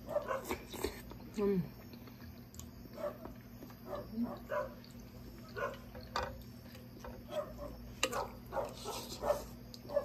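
Close-up chewing and wet mouth smacking of people eating soup and bread, in quick repeated bursts, with a few sharp clicks of metal spoons against glass bowls. A short hummed "mm" of enjoyment comes about a second and a half in.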